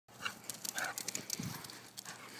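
A running dog's paws tapping quickly on asphalt as it comes close, with a short low sound from the dog about one and a half seconds in.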